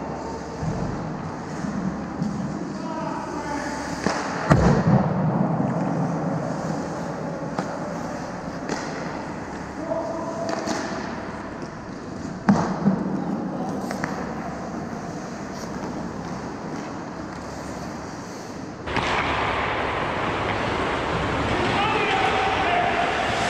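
Ice hockey play: skates scraping and carving the ice under a steady rink hiss, with sharp clacks of sticks and puck, the loudest about four and a half and twelve and a half seconds in, and players calling out. About 19 s in, the ice noise grows suddenly louder.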